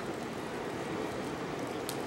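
Ocean surf washing against a pier, a steady rushing noise, with a single short click near the end.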